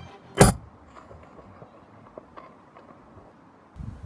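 A single sharp, loud hunting-rifle shot about half a second in.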